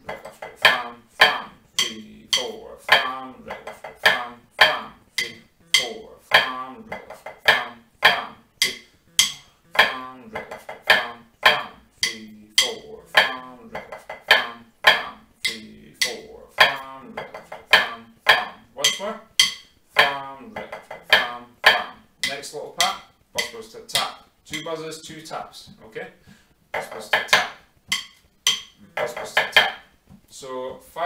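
Drumsticks striking a rubber snare practice pad, playing flams and strokes of a 3/4 pipe band march: a steady run of sharp taps, about two to three a second with quicker clusters between.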